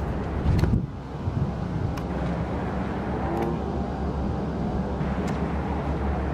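Steady low drone of rooftop air-conditioning condenser units running.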